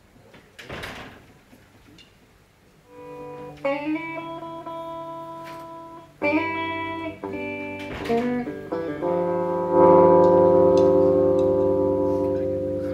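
Electric guitar, unaccompanied, starting about three seconds in: a few picked notes and chords, several sliding up into pitch and left to ring, growing louder to a fuller chord about ten seconds in that rings on and slowly fades.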